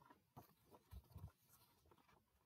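Faint rustling and soft taps of a printed sheet of paper being handled and held up, with a couple of dull low bumps about a second in; otherwise near silence.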